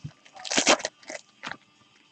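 Packaging on a sealed trading-card box being torn open: a few short crinkling, tearing rustles, the loudest about half a second in.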